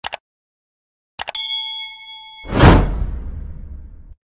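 Subscribe-button animation sound effects. Two quick mouse clicks come first, then another click with a bright bell ding that rings for about a second. About two and a half seconds in, a loud whoosh with a deep rumble fades out.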